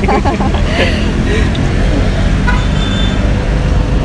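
Steady low rumble of road traffic, with brief voices in about the first second.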